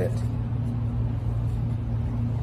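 A steady low hum with even background noise, unchanging throughout.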